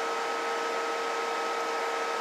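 Steady background noise on the radio bench: an even hiss with a steady mid hum tone and a thinner, higher whine, unchanging throughout.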